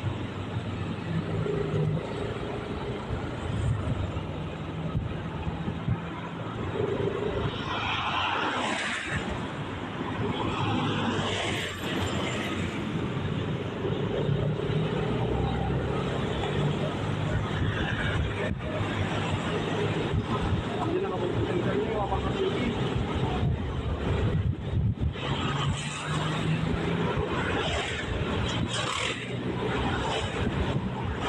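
Steady engine and road noise of a car driving on a highway, with louder rushes of noise about eight and eleven seconds in.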